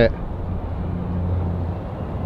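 A low, steady mechanical hum.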